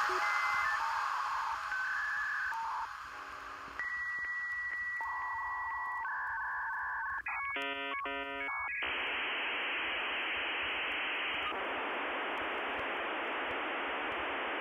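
Electronic telephone-style tones: steady beeps that step between a few pitches, a rapid warbling burst of alternating tones about seven seconds in, then a steady hiss.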